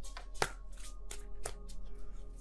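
A handful of short, sharp clicks, spaced irregularly, over faint steady background music.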